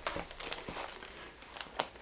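Paper and cardboard packaging rustling and crinkling as a gift box is opened by hand, with a few light ticks.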